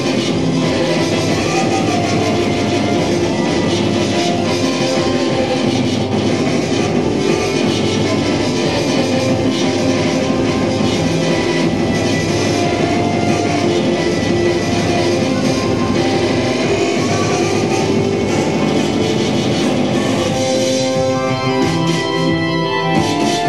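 Loud, steady rock music with guitar, played live through PA and amplifiers. There is no singing, and near the end the sound thins out.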